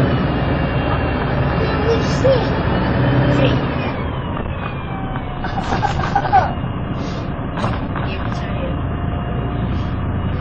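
MAN 18.220LF single-deck bus under way, heard from inside: diesel engine and road noise running steadily, with a thin high whine that slides in pitch. The Alexander ALX300 body gives a few rattles and clicks about six seconds in, and passengers' voices murmur in the background.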